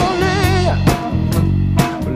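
Recorded rock song with a full band: a vocal melody sung with vibrato over guitar, bass and a drum kit, with a drum hit about once a second. The drums are an old 1942 Slingerland kit.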